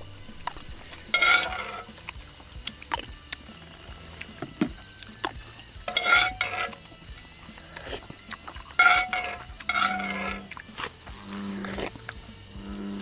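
A metal spoon scraping and clinking against a bowl and a pot while food is scooped out, in several short bursts with small clicks between.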